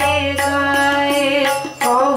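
Sikh kirtan: a woman's voice singing a devotional hymn in long held notes, with tabla accompaniment. The sound dips briefly near the end before the music resumes.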